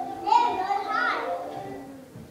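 A child's high-pitched voice calls out for about a second, rising and then falling in pitch, over pop music playing in the background.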